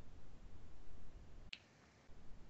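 A sip from a coffee mug: one short sharp click with a brief hiss about one and a half seconds in, over a faint low hum.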